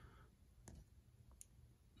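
Near silence with two faint clicks a little under a second apart, from wooden spring clothespins being handled and set down on paper.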